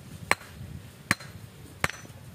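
Hand hammer striking the rough stones being laid in a house foundation: three sharp knocks about three-quarters of a second apart.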